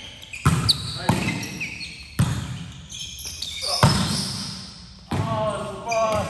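A volleyball rally: about five sharp slaps of the ball being struck and hitting the floor, spaced a second or so apart, each echoing in the gymnasium.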